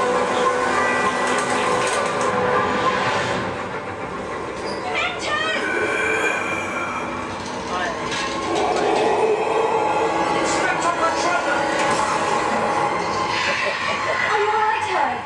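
Hogwarts Express ride audio: steady train running sounds with sustained tones, and a wavering voice-like cry about five seconds in.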